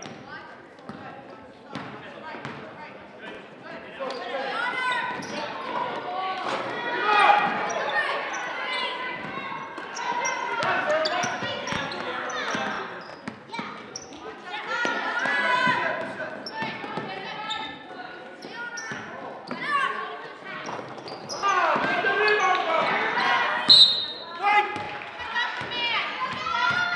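Basketball dribbled on a hardwood gym floor, the bounces echoing in a large hall, under loud, overlapping voices of players and spectators calling out during play.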